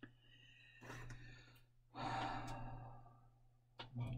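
A man sighing: a short breath about a second in, then a longer, heavier exhale about two seconds in that fades away, while he struggles to seat a fiddly model part.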